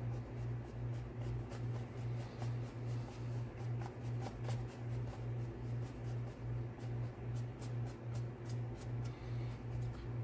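Bristles of a paintbrush scratching and dabbing over a rough, textured paper-mache surface in many short irregular strokes. Under them runs a low background hum that pulses about three times a second.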